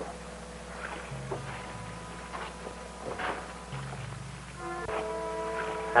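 Quiet dramatic background score of held tones over slowly changing low notes, swelling into a fuller sustained chord about five seconds in.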